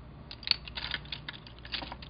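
Wooden colored pencils clicking and clattering against one another as they are handled in a pile: a quick run of clicks, the loudest about half a second in.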